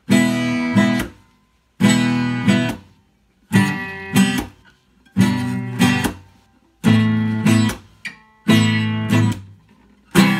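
Acoustic guitar strummed in a slow, even rhythm: six chords about every 1.7 seconds, each a ringing downstroke followed by a quick second stroke, then damped to a brief silence.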